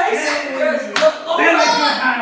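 Excited voices shouting and exclaiming, with one sharp smack about a second in.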